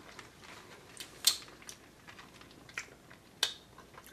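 Quiet room tone with a few short, scattered clicks and smacks from mouths chewing sour chewy candies.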